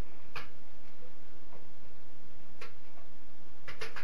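Light, sharp ticks about once a second in a quiet room, with a quick cluster of clicks near the end.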